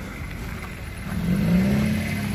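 Car engine idling with a steady low hum; about a second in it is revved lightly, its pitch rising and the sound growing louder before it levels off.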